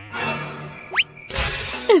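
Cartoon sound effects over background music: a quick rising whistle about a second in, then a short noisy crash like shattering glass.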